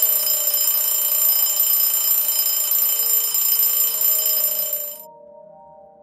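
Alarm clock bell ringing insistently, starting abruptly and cutting off about five seconds in.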